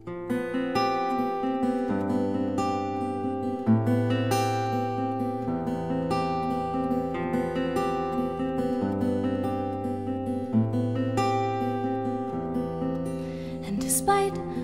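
Music: a solo acoustic guitar playing with no singing, in a steady quick picked pattern whose bass note shifts every couple of seconds.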